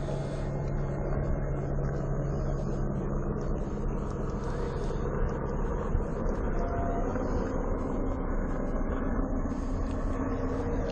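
Police car idling: a steady low rumble with a constant hum, heard from inside the car's cabin.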